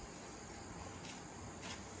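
Faint chorus of crickets chirping steadily, with a couple of soft high ticks about a second in and again near the end.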